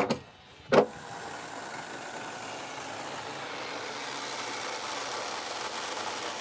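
Two hammer blows on roof timber, the second about three-quarters of a second in. From about a second in, a handheld corded power tool runs steadily and grows slowly louder.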